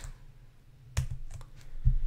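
Computer keyboard keystrokes: a sharp key click about a second in, a few lighter taps, then a heavier thump near the end.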